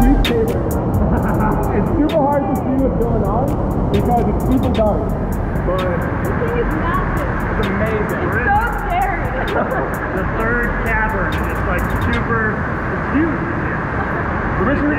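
Several people talking and laughing with a heavy echo inside a large water-filled cave, over a constant rushing of water. Scattered sharp clicks cut through the sound.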